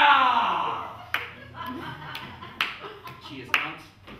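A performer's long falling vocal slide, dying away over about a second, followed by a handful of sharp, irregularly spaced clicks with faint murmurs in between.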